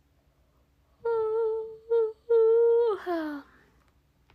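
A young woman humming with her mouth closed: a note held at one steady pitch, broken into three pieces starting about a second in, ending in a breathy slide downward.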